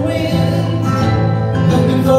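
Acoustic guitars playing live: an instrumental passage of a folk-rock song, strummed and picked with sustained notes.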